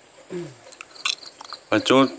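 Faint sipping and small mouth clicks as a person drinks from a cup, after a brief low hum from the throat; a voice starts speaking near the end.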